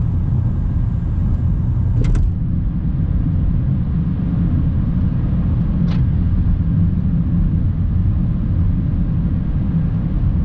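Cabin noise of a 1997 Toyota Mark II Grande 2.5 (JZX100) cruising: a steady low rumble of road and engine noise from its 2.5-litre inline-six. Two brief sharp clicks cut through, about two seconds in and again near six seconds.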